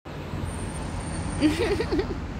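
Steady road traffic noise, a continuous low rumble and hiss, with a short vocal sound about one and a half seconds in.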